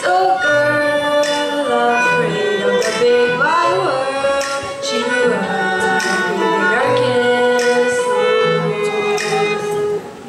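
A girl's voice singing a melody with a violin accompanying her. The notes are long and held, with sliding pitch ornaments.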